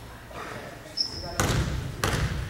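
Gymnasium ambience: voices of players and spectators echo in a large hall while a basketball is bounced on the hardwood floor. There is a short high squeak about a second in, and a loud burst of crowd noise near the end.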